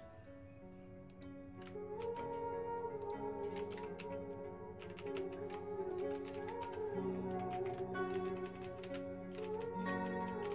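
Computer keyboard being typed on in quick runs of clicks, starting about a second in and getting busier in the second half, over soft background music with held notes.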